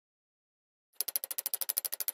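Rapid, even train of sharp clicks, about fifteen a second, starting about halfway through: a ticking sound effect on the closing title card.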